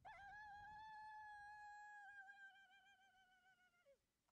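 A puppy's long, high whine, held steady for almost four seconds, then wavering and dropping in pitch as it stops.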